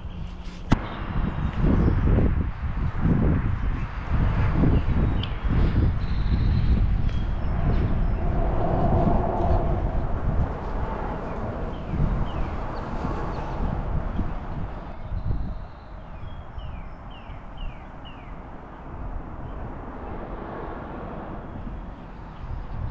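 Outdoor background rumble, loud and uneven for about the first fifteen seconds and then quieter. There is a sharp click near the start, and a bird gives a quick run of short, high, falling chirps in the quieter part.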